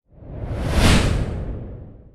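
Synthesized pass-by whoosh from the UVI Whoosh instrument, preset 'ENGINE Short Vehicle': a single swell of noise that builds to a peak a little under a second in and then fades away, moving from left to right like a short vehicle passing by.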